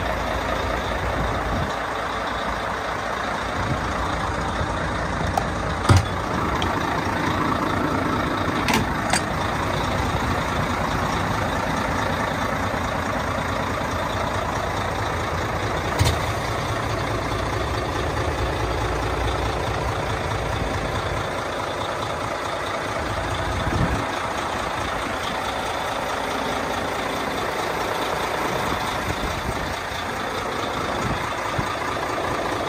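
Heavy diesel truck engine idling steadily on a Mercedes-Benz Actros suction and jetting truck. A few short sharp knocks cut in, about six, nine and sixteen seconds in.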